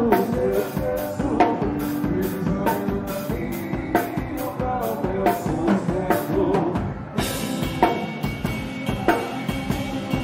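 Drum kit played to a quick, steady sertanejo beat, with bass drum, snare and cymbal hits about four a second, over the band's pitched instruments. The cymbal wash gets brighter and fuller about seven seconds in.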